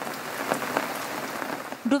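Rain falling steadily on standing floodwater, an even noise without a beat.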